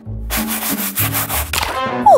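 Toilet brush scrubbing hard inside a porcelain toilet bowl, its bristles rasping in repeated back-and-forth strokes.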